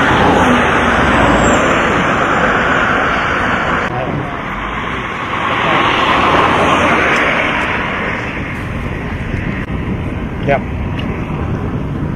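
Road traffic: vehicles passing on a road, their tyre and engine noise swelling and fading twice.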